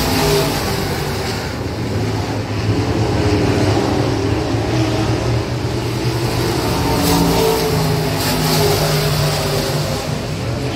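Dirt-track sport mod race cars' V8 engines running as the cars circle the track, heard from the grandstand. The engine note rises and falls a little as the cars pass.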